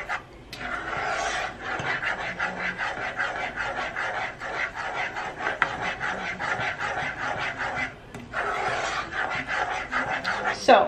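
A spoon scraping round the bottom of a saucepan as a butter, brown sugar and corn syrup mixture is stirred while being heated toward a boil: a fast, even rhythm of rasping strokes, broken briefly just after the start and again about eight seconds in.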